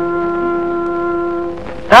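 Background film score holding one sustained, steady note with overtones, which fades out about one and a half seconds in.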